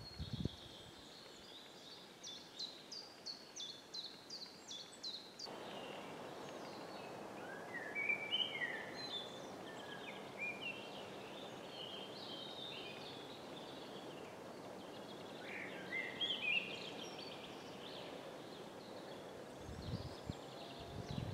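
Songbirds singing in woodland: first one bird repeating a short high note about twice a second, then several varied warbling phrases. A steady background hiss rises suddenly about five seconds in.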